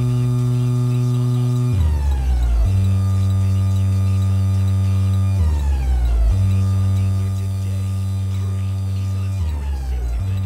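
Experimental electronic music: a low, sustained electronic drone with many overtones that shifts to a new pitch about every four seconds, each change marked by a short downward-sliding sweep.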